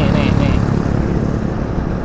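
Riding on a motorcycle: steady wind rush on the microphone mixed with engine and road noise. A short scrap of speech sits at the very start.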